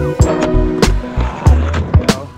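A skateboard landing a trick and rolling on concrete, its wheels and deck clacking, over background music with a steady beat.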